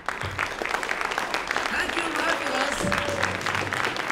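Audience applauding, with a few voices calling out among the clapping.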